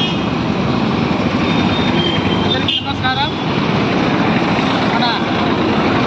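Busy street noise: a steady din of road traffic with overlapping voices of people talking, one voice standing out briefly about halfway through.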